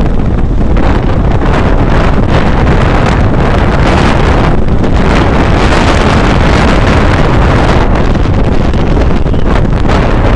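Wind buffeting the microphone of a phone riding along on a moving motorcycle: a loud, steady rushing that is heaviest in the low end and covers any engine sound.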